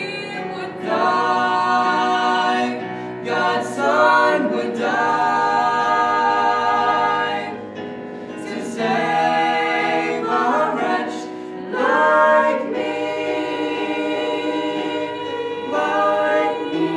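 A mixed vocal trio of two female voices and one male voice singing a gospel song in harmony. They hold long notes in phrases a few seconds long, with short breaks between phrases.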